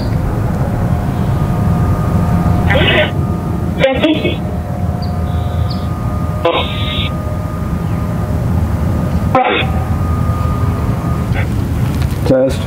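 Ghost-box 'portal' speaker playing spirit-box software output: a steady noisy hum with faint held tones, broken by short chopped voice-like fragments and three sudden cut-outs. The investigators take the fragments for spirit voices singing.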